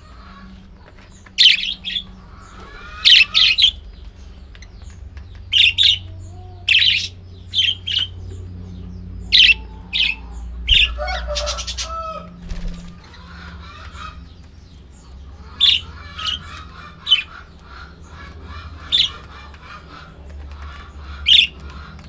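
A flock of budgerigars chirping and chattering: about a dozen short, sharp, loud calls scattered through, over softer continuous warbling.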